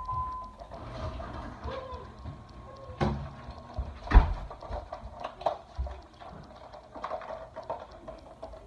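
Small packaging being handled by hand: scattered clicks and light knocks, with a louder thump about four seconds in. A faint steady tone runs through the first three seconds.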